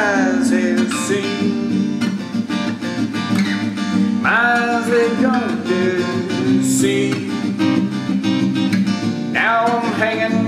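Acoustic guitar strummed in a steady rhythm as song accompaniment, with a voice singing brief phrases about four seconds in and again near the end.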